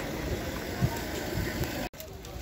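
Outdoor background noise with an uneven low rumble and faint distant voices. It cuts off abruptly for an instant near the end.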